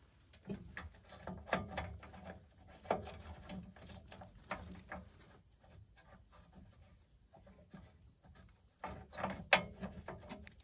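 Hand socket ratchet and socket on a rusted bumper bolt: scattered, irregular metal clicks and taps as a socket is tried for size, with a louder flurry of clicks near the end.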